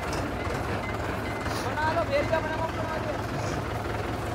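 Mahindra 575 tractor's diesel engine idling steadily with a low, even rumble.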